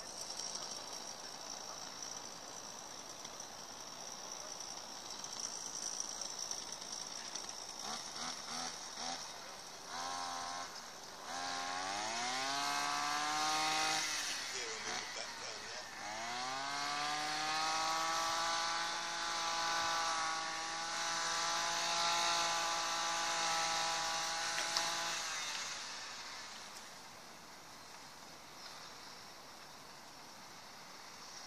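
Small petrol engine of a power cutting tool used to cut back greenery, revved in short bursts, climbing in pitch and dropping back, then rising again and held at steady high revs for several seconds before it stops.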